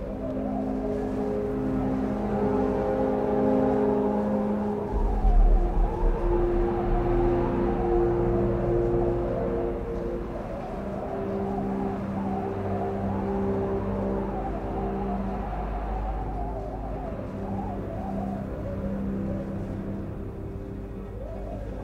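Background music: slow, held ambient chords that shift every second or two, over a deep bass drone that comes in about five seconds in.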